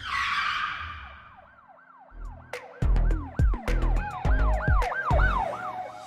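Intro music: a whoosh, then a siren-like wailing tone that rises and falls over and over, joined about two and a half seconds in by a heavy bass beat.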